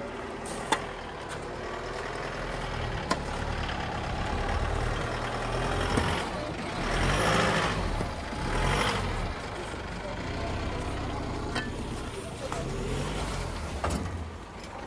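Isuzu D-Max pickup's diesel engine running under load as the truck tries to drive free on a snowy, icy road, with a rush of tyre noise on the snow that swells twice, about seven and nine seconds in. A couple of sharp clicks sound in the first few seconds.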